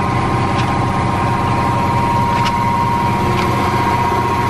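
A vehicle engine idling steadily, with a steady high-pitched tone over the hum and a few faint clicks.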